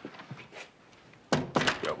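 A few faint clicks, then a dull thump about a second and a half in, followed by a man's voice starting up.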